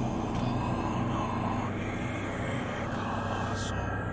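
A steady, dense low rumble from an intro sound effect, with a faint whoosh near the end.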